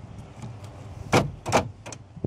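1997 GMC K1500's power door lock actuators cycling, a few sharp clunks about a second in: the keyless entry receiver going into remote-programming mode once the OBD-II port's pins 4 and 8 are jumpered.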